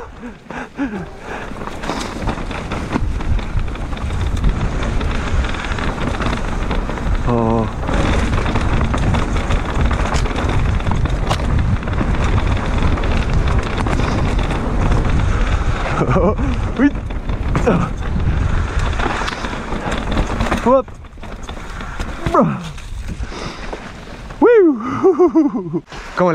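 Wind rushing over a helmet- or chest-mounted action camera's microphone as a mountain bike runs fast down a dirt trail, with the tyres' roll and knocks and rattles from the bike over bumps. The rider gives a few short vocal whoops along the way.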